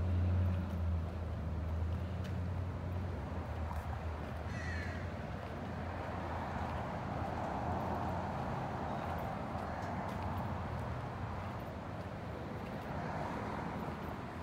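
A crow caws once, about five seconds in, over a steady low hum that is loudest at the start and a broad rushing swell of outdoor noise in the middle.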